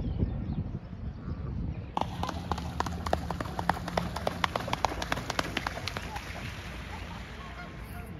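A swan running across the water to take off, its feet slapping the surface in a quick, even run of splashes, about five a second, that thins out and stops after a few seconds.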